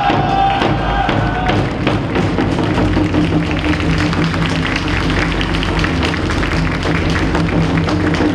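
Wind band with saxophones playing a cheering tune over a steady drum beat. A loud, long shouted call falls away in the first second and a half.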